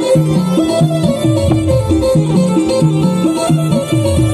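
Live Timli band music: an electronic keyboard playing a repeating melody over a steady dance beat with pitched bass drum hits.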